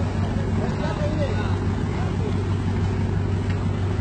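Passenger ship's engine running with a steady low hum under an even rushing noise of wind and water, with faint voices over it.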